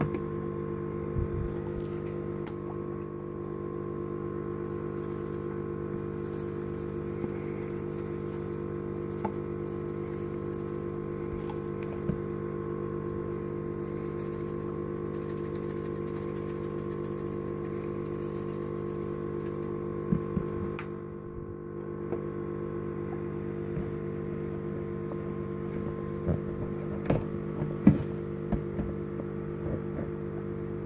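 Steady hum of an aquarium pump, with water bubbling at the tank's surface. A few light clicks and taps break in now and then, most of them near the end.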